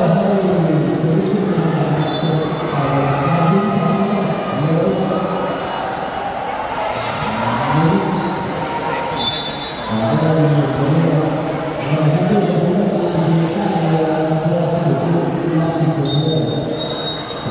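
Voices talking almost continuously, over a basketball bouncing on a hard court.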